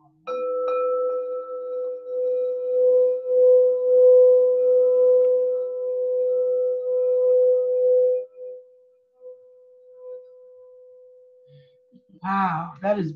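Crystal quartz singing bowls ringing: one bowl is struck with a mallet about a third of a second in and rings with a clear, pure tone and higher overtones over the lower tone of a second bowl that is still sounding. The ring swells and wavers in loudness, then drops sharply about eight seconds in, leaving a faint ring that fades away.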